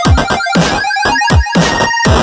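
Electronic dance music: deep kick drums that drop in pitch, about three a second, under short high synth notes.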